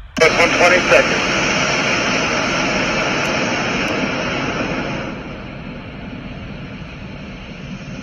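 Five-segment solid rocket booster of NASA's Space Launch System firing in a horizontal static test: a loud, steady, dense roar that drops somewhat in level about five seconds in. A voice briefly calls out the elapsed seconds at the very start.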